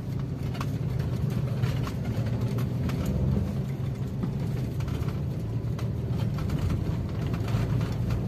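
A car driving, with a steady low rumble of engine and road noise heard from inside the cabin.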